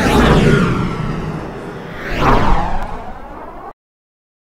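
Two whoosh sound effects sweeping up and away, the second the louder, peaking about two and a half seconds in, then the sound cuts off suddenly near the end.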